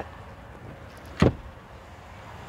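A single short thump about a second in, as the folded-up rear bench seat cushion of a pickup's crew cab is lowered back into place.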